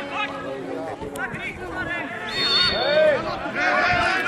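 Players and onlookers shouting and calling across an open football pitch. About two and a half seconds in there is a short, steady, high-pitched blast of a referee's whistle.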